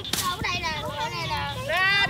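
Several children yelling and shrieking in high voices, overlapping, with a louder drawn-out yell near the end: excited cries as they run from a bee nest they have just knocked down.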